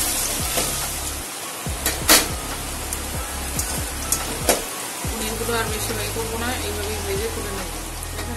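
Paneer cubes sizzling as they fry in hot oil in a metal kadai, with two sharp knocks about two and four and a half seconds in. Background music with a steady bass beat runs underneath, and a melody comes in about five seconds in.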